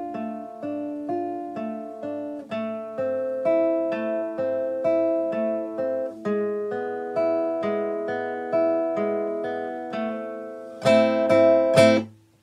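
Nylon-string classical guitar fingerpicked one note at a time in a steady pattern across the G, B and top E strings, about two to three notes a second. Near the end comes a loud strummed chord, down, up and down again, then stopped short by damping the strings.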